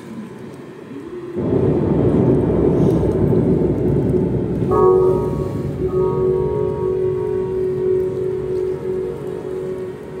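Electronic synthesizer music opening with a low rumbling, thunder-like noise swell that comes in about a second in, joined about halfway through by a sustained chord of steady tones.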